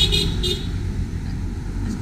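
Road traffic: an SUV driving past, its engine and tyres making a steady low rumble.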